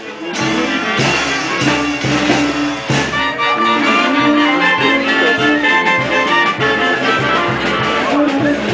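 A municipal brass band playing lively dance music with a steady beat and sustained brass notes, swelling back up just after a short lull.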